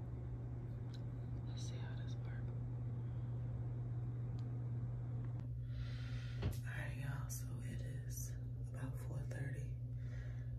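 A steady low hum throughout, with soft whispering coming in about halfway through.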